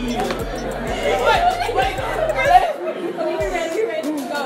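Several young people's voices chattering over each other, over background music with a steady bass beat that cuts out about two and a half seconds in.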